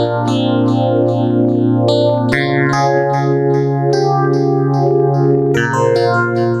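Korg MS2000 virtual analog synthesizer playing a custom patch: held bass notes and chords under a repeating run of short, bright plucked notes, about four a second. The chord changes about two seconds in and again near the end. The step sequencer is set to drive the pan rate of the patch.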